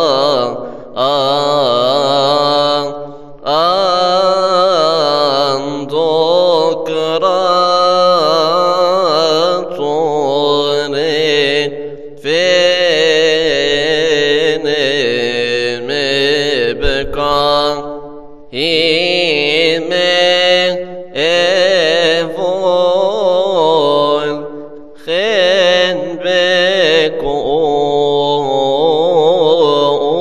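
A man's solo voice singing Coptic Orthodox liturgical chant, long drawn-out melismatic phrases with wavering pitch, breaking off briefly for breath several times.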